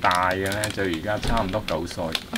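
A man speaking in Chinese, over a scatter of small clicks and crinkles from a child handling a wrapped snack.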